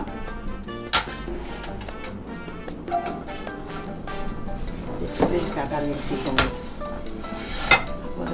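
Background music, with a few sharp clinks and knocks from a frying pan and kitchenware being handled on the stovetop, the last two near the end.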